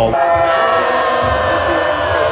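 A woman's long, high scream held on one pitch, with crowd noise behind it; it cuts in suddenly just after the start.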